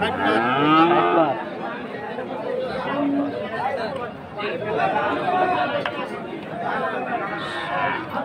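A bovine mooing once: a single long call of about a second right at the start that rises and falls in pitch. Crowd chatter and men talking continue underneath.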